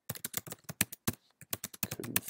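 Typing on a computer keyboard: a fast, uneven run of sharp key clicks.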